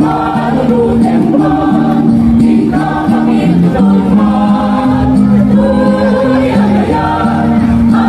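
Mixed choir of men and women singing in harmony, holding long sustained chords that change every second or so.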